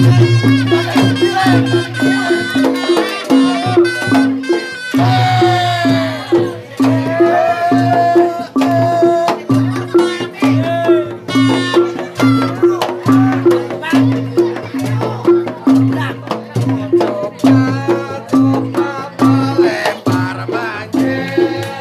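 Reog Ponorogo gamelan accompaniment: a steady repeating beat of pitched gongs and drums under a wavering, gliding high melody.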